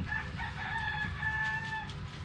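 A rooster crowing: one long, slightly wavering call lasting nearly two seconds.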